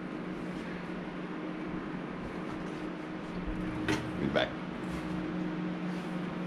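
Steady low electrical hum from a household appliance, with two short, sharp sounds close together about four seconds in.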